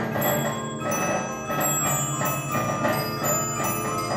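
Swiss cylinder music box by Rivenc, circa 1880, playing a tune. The pinned cylinder plucks the steel comb while its bells ring and its drum beats along in short, repeated strokes.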